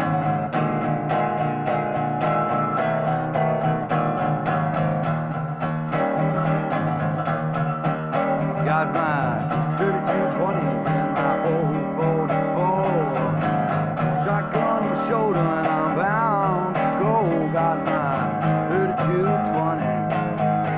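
Wood-bodied resonator guitar played fingerstyle blues, a steady low bass note under picked treble notes, some of them bending up and down in pitch.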